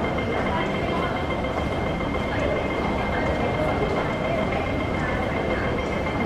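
Railway station platform ambience: a steady rumble of machinery and crowd with a constant thin high whine and faint voices.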